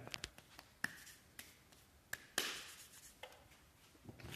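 Bare hands working loose potting mix in a plastic tub: scattered sharp clicks and scrapes, with a louder rustling shove of the mix about two and a half seconds in.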